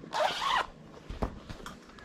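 Zipper on a HEAD tennis racket cover being pulled open in one quick run of about half a second, followed by a light knock.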